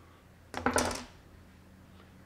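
A short clatter of quick sharp clicks, lasting about half a second, beginning about half a second in.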